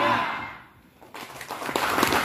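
The tail of a crowd's shout fades out. About a second in, applause begins and builds, clapping from the seated audience under an open canopy.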